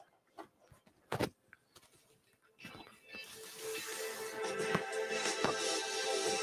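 A few small clicks as an audio cable is plugged in, then a melody starts on a pair of small desktop speakers about two and a half seconds in, swelling up to a steady level. The music is streamed over Bluetooth audio (A2DP) from an Android phone to a microcontroller board whose internal DAC output drives the speakers.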